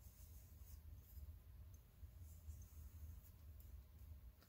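Faint, irregular strokes of a paintbrush laying acrylic paint over crackle medium on a tumbler, over a low steady hum.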